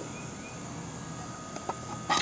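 Low, steady background noise with one faint click about three-quarters of the way through, as a small hinged wooden box is handled.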